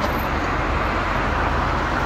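Steady road traffic from vehicles on the highway below: an even rumble and hiss, with no single event standing out.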